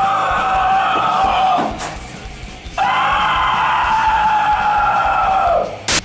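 A high voice holds two long wailing notes, the first about two seconds and the second about three, the second sliding down as it ends. A sharp click comes just before the end.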